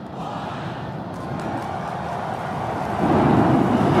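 SpaceX Super Heavy booster's 33 Raptor engines firing at liftoff: a steady rush of noise that builds and jumps louder about three seconds in.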